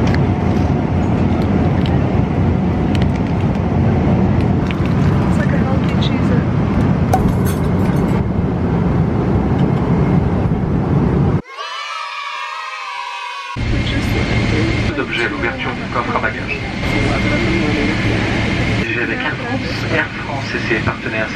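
Airliner cabin noise in flight: a steady low rumble. It breaks off about eleven seconds in and returns, quieter, with a steady low hum.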